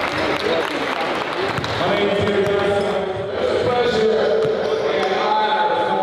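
Basketballs bouncing on a hardwood gym floor amid crowd voices in a large hall, with long held voice notes coming in about two seconds in.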